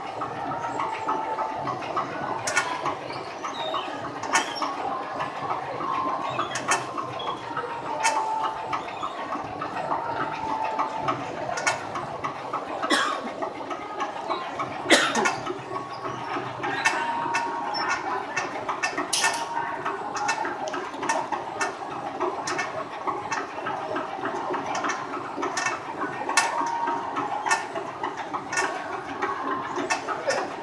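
Fabric inspection machine running, cloth feeding steadily through its rollers under a measuring wheel, with scattered sharp clicks and brief squeaks now and then; the loudest click comes about halfway through.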